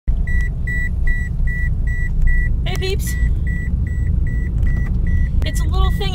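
A car's warning chime beeping steadily, a short high beep about two and a half times a second, over a steady low rumble inside the car's cabin.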